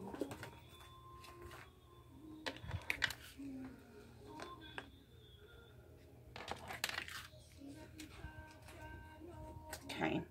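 Light clicks and knocks as tarot card decks with beaded bracelets on them are lifted off a wooden tabletop, over faint background music.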